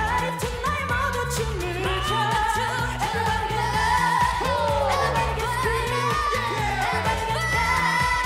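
Korean pop dance song sung live by a mixed group of male and female voices over a backing track, with a repeating bass line under the singing.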